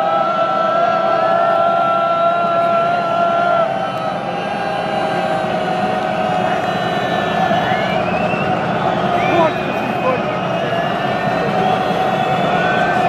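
Football crowd in the stand chanting together on one long held note, with scattered shouts and whistles over it.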